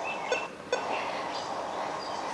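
Steady hiss with a few faint, short high chirps and a small click about two-thirds of a second in.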